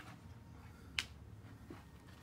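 A single sharp click of hard plastic about a second in, as an empty plastic pumpkin candy bucket is grabbed and pulled across a couch, over faint room noise.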